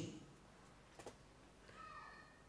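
Near silence: hall room tone in a pause, with a faint click about a second in and a brief, faint, high-pitched call near the end.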